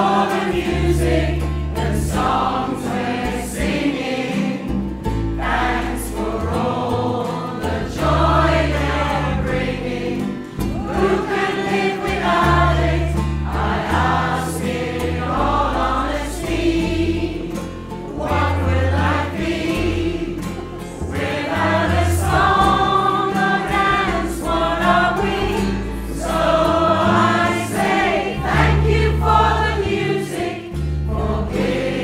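A choir singing with instrumental accompaniment, over low bass notes that change every second or two.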